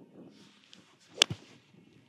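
Golf iron striking a teed ball on a full swing: one sharp, crisp click about a second in, with a fainter tick right after it.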